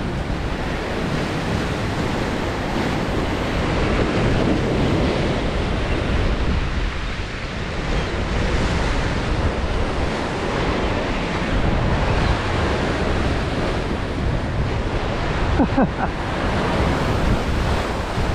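Rough sea surf breaking and washing over the rocks of a jetty, swelling and easing with each wave, with wind buffeting the microphone.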